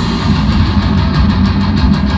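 Live heavy metal band playing loud: distorted electric guitars and bass under drums with regular cymbal strikes.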